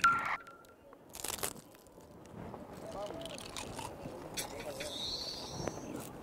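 Crisp Tajik flatbread (non chapoti) crunching and crackling as it is broken close to the microphone, a short cluster of crunches about a second in. A brief ringing tone sounds at the very start, the loudest moment, and a high rising swish comes near the end.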